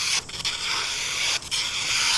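A survival knife blade slicing through a sheet of paper: a steady, dry rasping hiss that breaks off briefly twice as the cut goes on.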